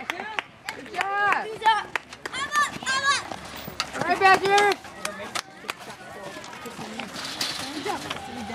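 High-pitched children's voices calling out and chattering in short bursts, with scattered sharp clicks in between.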